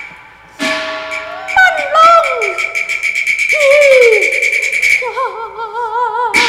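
Cantonese opera music: a sharp percussion strike about half a second in starts a fast, evenly repeating percussion roll. Over it come falling, wailing glides in pitch, then a held note with wide vibrato near the end.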